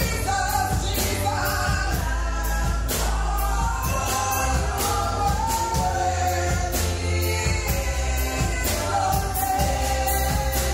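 Several women singing a gospel worship song into microphones, backed by a live band with drum kit, bass and electric guitar. The bass runs steadily under regular drum hits.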